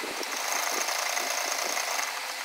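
Sewing machine running steadily, stitching lace onto a fabric strip.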